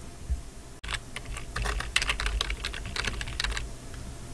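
Computer keyboard being typed on, a quick run of key clicks that starts about a second in and stops just before the end, as a file name is typed in.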